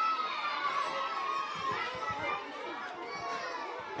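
A crowd of children chattering and calling out at once, many high young voices overlapping with no single voice standing out.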